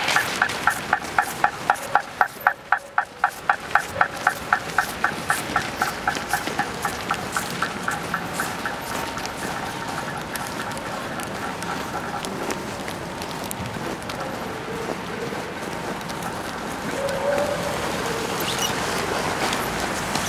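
Pedestrian crossing signal beeping rapidly, about four beeps a second, growing fainter and fading out about twelve seconds in.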